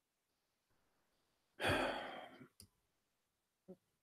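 A man's single sigh into the microphone about one and a half seconds in, a breath out that fades within a second, followed by a faint click; otherwise near silence.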